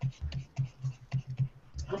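Pen scratching on paper in a quick run of short strokes, heard as many small scratches and ticks.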